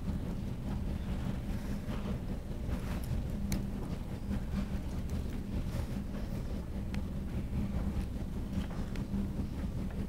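Room tone: a steady low hum with a few faint clicks, and no sound from the video being played, whose audio is not coming through the room's sound system.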